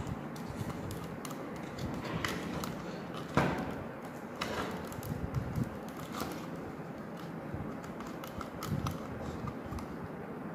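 Copper magnet wire being pulled and threaded by hand through the slots of a plastic motor stator: scattered small clicks and rustles, with a louder scrape about three and a half seconds in.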